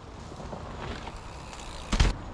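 Electric mountain bike riding down a leaf-covered dirt trail toward a jump: a low, steady rustle of tyres over leaves and dirt, then one sharp thud near the end.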